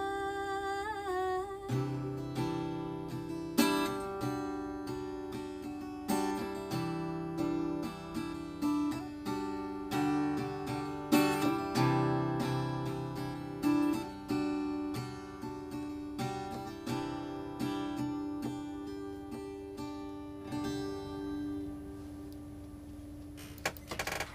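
Acoustic guitar ending a song: a held sung note fades out about two seconds in, then the guitar carries on alone with chords struck every second or so. The last chord, a little after twenty seconds in, is left to ring out as the song finishes.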